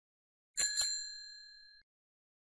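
Two quick click sound effects about half a second in, then a bright bell ding that rings out and fades over about a second: the notification-bell chime of an animated subscribe button.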